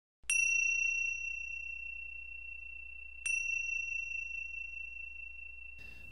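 A small high-pitched bell or chime struck twice, about three seconds apart. Each strike gives the same clear note, which rings on and slowly fades.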